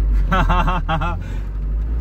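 Engine of a custom four-wheel-drive FSO Polonez running with a steady low drone, heard from inside the cabin as the car moves off in first gear in low range. A man laughs over it in the first second.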